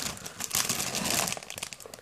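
Clear plastic bags around model-kit runners crinkling as the bagged runners are lifted and shuffled. The rustling is busiest in the first second and thins out toward the end.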